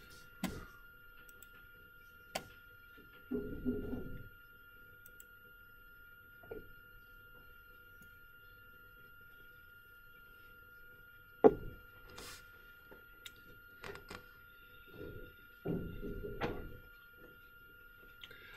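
Quiet room with a steady faint electrical whine, broken by a few scattered sharp clicks and knocks, the loudest about eleven and a half seconds in, and a couple of low dull thumps.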